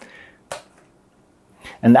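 Two sharp knocks about half a second apart: metal aerosol cans of contact cleaner being set down on a hard surface.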